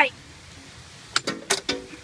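A child's short burst of laughter about a second in: four quick, sharp syllables.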